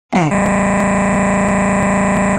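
Oddcast text-to-speech voice 'Allison' reading a long string of a's as one continuous synthetic 'aaaa' vowel. It starts just after the beginning, dips quickly in pitch, then holds a loud, unchanging monotone.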